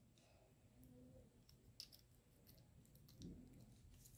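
Near silence with a few faint clicks of small plastic toy parts being handled and fitted together, the clearest a little under two seconds in.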